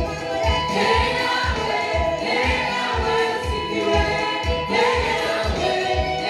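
Gospel praise-and-worship singing: a woman leads on an amplified microphone with backing singers joining in, over backing music with a steady beat.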